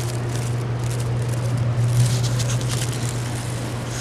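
Steady low hum over a background haze of outdoor noise, with a few faint ticks about two and a half seconds in.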